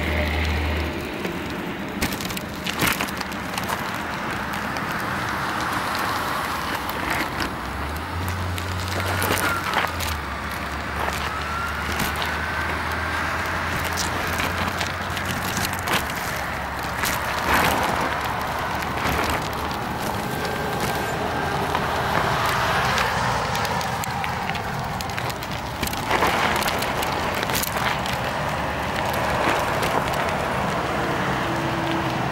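Riding a bicycle beside a highway: a steady rush of wind and tyre noise with frequent sharp rattles and knocks as the bike goes over rough ground, and car traffic passing on the road alongside.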